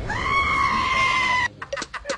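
A single long, high-pitched cry held on one nearly steady pitch for about a second and a half, then cut off abruptly. A rhythmic drum beat starts right after.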